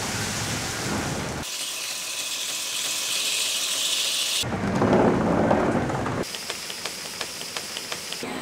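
Water splashing down from a large wooden tanning drum. Then come abrupt changes to other machine noise: a high hiss, a louder rushing spell about halfway, and near the end rapid, evenly spaced clicking from turning tannery shafts and gears.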